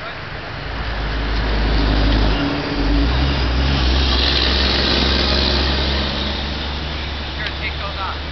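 A person sliding down a dry dirt slope: a rushing scrape of loose dirt that swells in the middle, over a steady low rumble.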